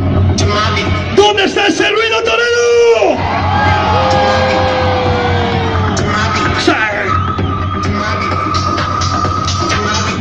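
Loud DJ dance music over a large festival sound system with a steady bass beat, the crowd shouting and whooping over it. A long held note about four seconds in, and a steady high tone in the last few seconds.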